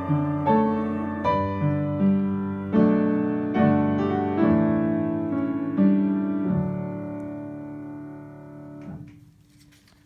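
Upright piano playing the closing chords of a hymn, a new chord struck about every three-quarters of a second, then a final chord held and fading away. A brief rustle cuts it off near the end.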